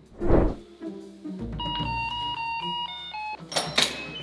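An apartment front door thuds shut, then an electronic door chime plays a short tune of several beeping notes, and near the end sharp clicks come from the door and its handle.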